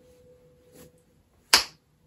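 A single sharp snap or click about one and a half seconds in, by far the loudest sound, after faint rustling.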